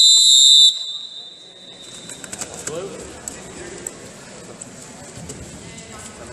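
Referee's whistle: one short, loud, high-pitched blast lasting under a second at the very start, stopping the wrestling action.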